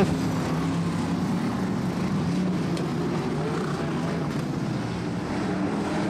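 Vintage sprint car engines running at demonstration pace on a dirt speedway: a steady, even drone without sharp revving.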